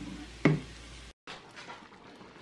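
Faint sounds of a wooden spoon stirring a thick gravy stock of meat, bones and vegetables in a frying pan, with the stock gently simmering. The sound cuts out for a moment just past a second in, and a faint simmering hiss follows.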